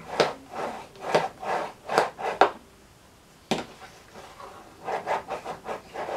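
A plexiglass block pressed and slid over a plastic collar-shaped clay cutter, rubbing and scraping in a series of short strokes as it pushes the cutter through rolled polymer clay. There is one sharp click about three and a half seconds in.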